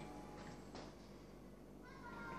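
A cat meowing faintly near the end.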